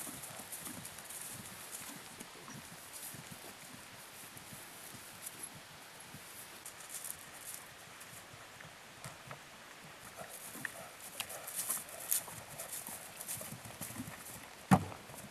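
Hoofbeats of a horse cantering on grass turf, faint and rhythmic, with a few sharper hoof strikes near the end.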